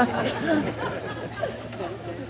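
Quieter speech: low, broken voices between the phrases of a talk, with no other sound standing out.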